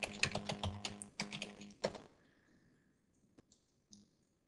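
Typing on a computer keyboard: a quick run of keystrokes for about two seconds, then a pause and one or two single clicks near the end.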